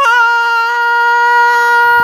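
A cartoon character's long wailing cry, held on one steady high pitch.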